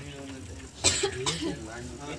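A person coughing twice in quick succession about a second in, over low background talk.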